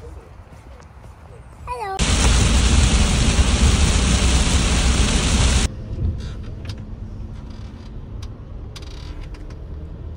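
A loud, rushing roar starts abruptly about two seconds in and cuts off suddenly after about three and a half seconds. It gives way to steady, quieter road and engine rumble heard inside the VW Crafter van as it drives through a tunnel in traffic.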